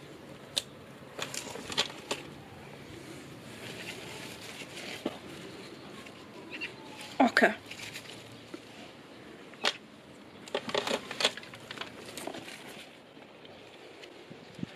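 Soft rustling and scattered light clicks and taps of hands working compost and handling small plastic plant pots.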